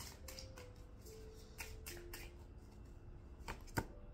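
Tarot cards being shuffled and handled, quiet scattered clicks and flicks of the card stock.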